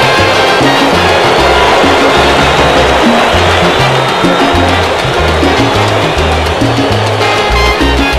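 Salsa band playing an instrumental passage, with a strong bass line of low notes changing about every half second.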